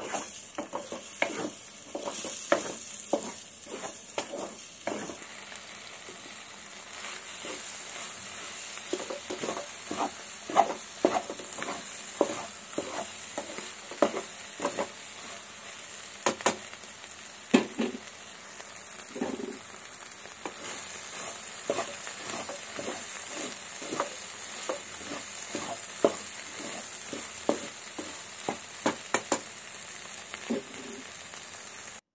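Wooden spatula stirring and scraping egg bhurji in a frying pan: many irregular scrapes and knocks against the pan over a steady sizzle of frying, with a few sharper knocks standing out.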